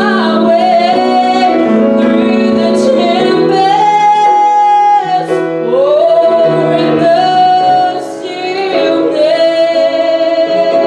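Female singing with piano accompaniment, a slow song of long held notes, with brief breaks between phrases about five and eight seconds in.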